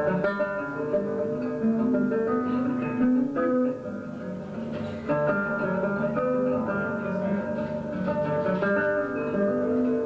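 Solo acoustic guitar played as the instrumental introduction to a folk ballad: plucked single notes and chords ringing into one another, before any singing.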